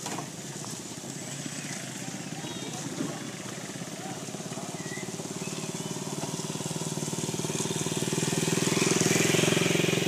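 A small engine running with a fast, even pulse, growing louder over the last few seconds.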